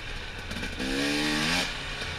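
Dirt bike engine running under way. About a second in, it revs up into a clear rising note for under a second, then eases off.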